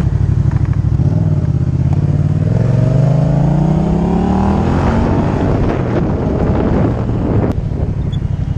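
Yamaha FZ-07's parallel-twin engine accelerating under way, its pitch rising steadily for a few seconds and then levelling off about five seconds in. Wind buffets the helmet-mounted microphone throughout.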